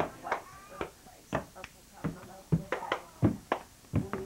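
Irregular thumps and knocks, two or three a second, from a handheld camcorder being carried through the house: footsteps and handling bumps picked up by the camera.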